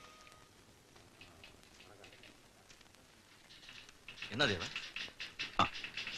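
Soft footsteps and shuffling on a hard floor, then a short burst of a man's voice about four seconds in and another brief vocal sound about a second later.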